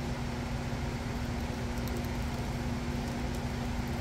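Steady machine hum with one constant low tone over an even hiss.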